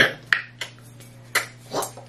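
Four short, sharp clicks, spread unevenly, with the last two close together near the end.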